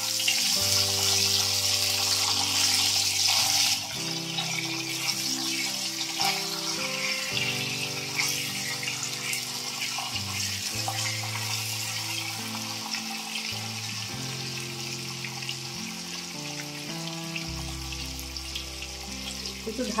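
Whole peeled pointed gourds sizzling in hot oil in a wok, with a steady hiss that is loudest for the first few seconds and then settles a little lower. Soft background music with held chords plays underneath.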